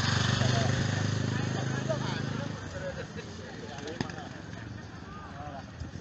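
A motor vehicle engine running close by, loud and low, fading out about two and a half seconds in. Voices of people chatter around it, and there is a single click about four seconds in.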